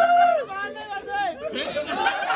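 Several people's voices talking and calling out over one another, opening with a loud, drawn-out call.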